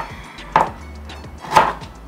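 Kitchen knife chopping a carrot on a plastic cutting board: two sharp cuts about a second apart.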